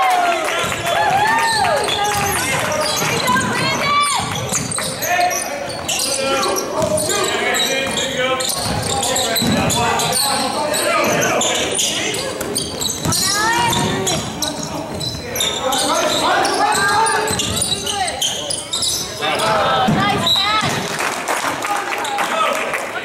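Live basketball play on a hardwood gym floor: the ball bouncing, sneakers squeaking in short rising and falling chirps, and players and spectators calling out, all echoing in the large gym.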